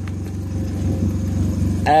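A car engine idling, a steady low drone.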